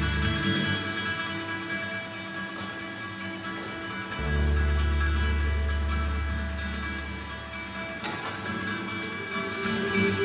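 Live acoustic guitars and bass holding sustained, slowly fading chords. A deep bass note sounds about four seconds in and dies away over the next few seconds.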